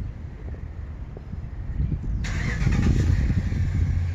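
A vehicle passing nearby, its low rumble swelling and a hiss of road noise rising over the second half.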